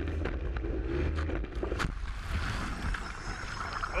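Onboard audio from a Formula 2 tunnel boat in a crash. Its outboard engine runs steadily, several sharp knocks come in the first two seconds as the boat is hit, and then the engine note drops away under a rushing water noise as the boat flips upside down into the river.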